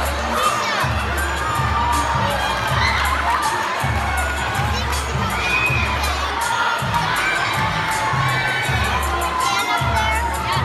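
A large audience, many of them children, cheering and shouting loudly and continuously, over the low, repeating bass beat of the dance music.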